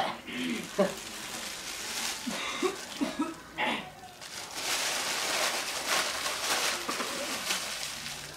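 A man laughing in a helium-raised voice, then from about halfway a foil birthday balloon crinkling and hissing at his mouth as he sucks the last helium out of it.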